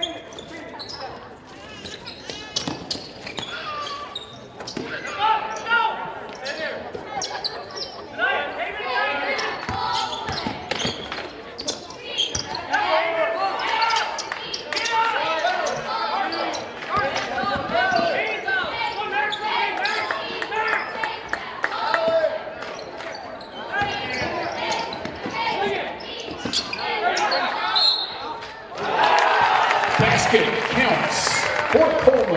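Live basketball play in a school gym: the ball bouncing on the hardwood floor under overlapping shouts and chatter from players, coaches and spectators. The hall echoes, and the noise swells sharply near the end.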